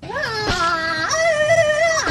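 A voice singing: it slides up and back down at first, then holds one high, steady note for about a second.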